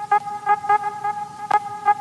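Intro sound effect: a buzzing, horn-like tone held at one pitch, pulsing several times a second, with a sharp click about three-quarters of the way through.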